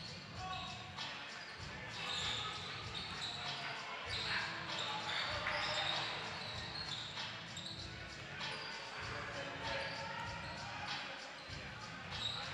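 Basketball dribbled on a hardwood gym floor during live play, with many quick impacts, under indistinct voices of players and spectators in the gym.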